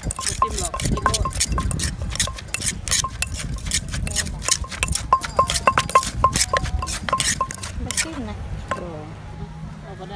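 Wooden pestle pounding papaya salad in a clay mortar: quick repeated knocks, several a second, each with a short ring, easing off about two seconds before the end.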